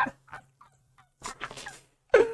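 A man's short, stifled vocal outbursts, a few quiet bursts in quick succession, much quieter than the talk around them.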